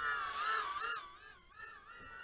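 The brushless motors and props of a 110 mm micro FPV quadcopter whining in flight, the pitch wavering up and down as the throttle changes.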